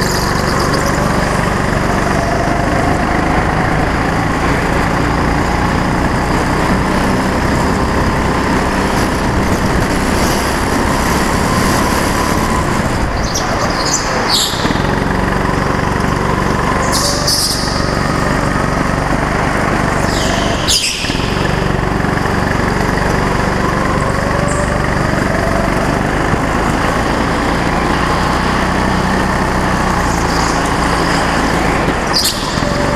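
Go-kart engine running under throttle, heard close up from the kart itself. Its pitch rises and falls with speed along the straights and through the corners, and a few brief high squeals come through near the middle.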